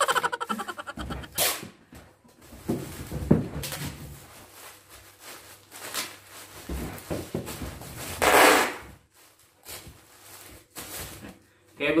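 Brown packing tape being unrolled and pulled off its roll: a quick crackling run of ticks in the first second and a loud rasping pull about eight seconds in, with short knocks of handling in between.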